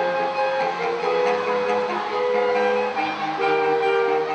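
Saxophone quartet playing, several saxophones holding notes together in harmony, the chords moving on about once a second.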